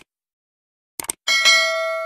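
Sound effect of a subscribe-button animation: a quick double mouse click at the start and another about a second in, followed by a bell ding that rings on and slowly fades.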